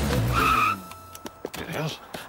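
Cartoon sound effect of a small car's tyres screeching as it skids to a stop, over a low engine rumble; the screech ends abruptly about three quarters of a second in. Then a few light, quick footsteps.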